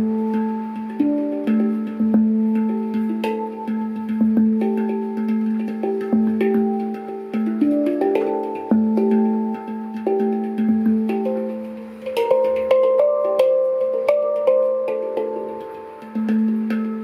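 Handpan tuned in D minor, played with the fingers: a steady pulse of ringing struck notes, a low note returning again and again under a melody of higher notes, each note ringing on as the next is struck. About twelve seconds in, the melody climbs higher.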